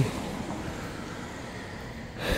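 Steady outdoor background noise: an even rushing hiss with no distinct events, easing off slightly.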